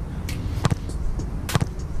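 A soccer ball struck hard in a free kick: a few sharp knocks, the loudest about one and a half seconds in. Behind them is a steady low rumble of wind on the microphone.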